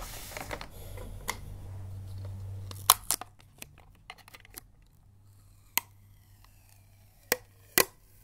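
Wrapping paper rustling and crinkling as it is folded around a box for about three seconds. Then come a handful of sharp clicks from fingernails tapping and handling a clear plastic tape dispenser, the loudest about three seconds in.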